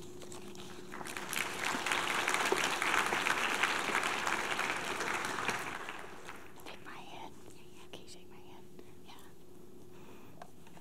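Audience applauding, starting about a second in and dying away about six seconds in.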